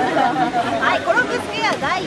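Speech: a voice talking animatedly, with people chattering around it.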